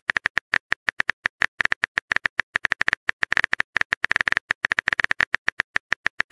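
Rapid clicks of a phone keyboard typing sound effect, about ten a second in uneven runs, as a texting-story animation types out the next message.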